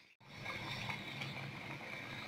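Pot of dry okra soup boiling on the stove, with a steady bubbling hiss that comes in after a brief gap at the very start.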